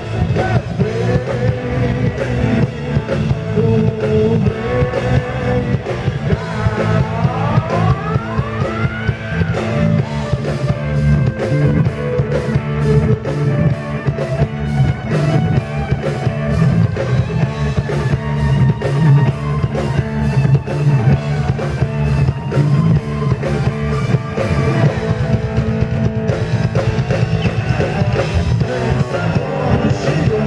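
Live rock band playing: drums, bass guitar, electric guitar and keyboards with a male singer, with a rising glide in pitch about eight seconds in.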